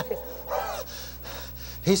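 A man gasps once, a short breathy gasp about half a second in, acting out a choking man catching his breath.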